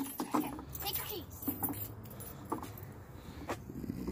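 Quiet rustling and light scattered clicks of an extension cord being uncoiled and dragged over wooden deck boards, with faint children's voices.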